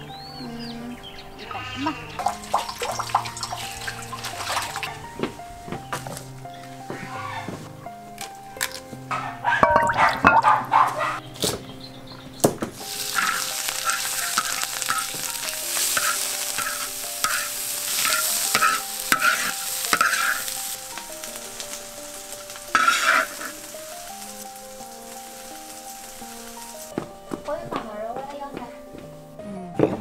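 Garlic shoots and cured pork stir-frying in a hot wok: a loud sizzle for several seconds in the middle, stirred with regular strokes about twice a second. Soft background music runs throughout, with a loud clatter of knocks about ten seconds in.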